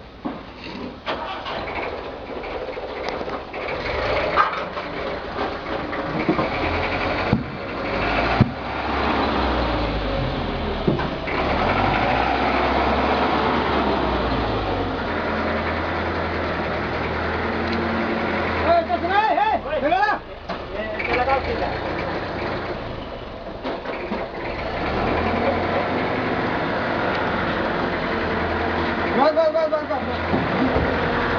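A vehicle engine running steadily in the background, with a couple of sharp knocks about seven and eight seconds in and voices talking at times.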